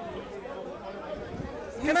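Low background chatter of voices in an outdoor crowd during a short pause in the argument, then a man starts speaking near the end.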